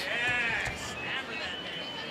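A high, wavering shout from a voice in the arena, lasting about half a second at the start, then a quieter steady background of arena noise.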